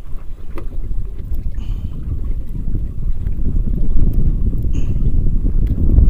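Wind buffeting the microphone, a fluctuating low rumble that grows louder from about four seconds in, with a few faint light clicks.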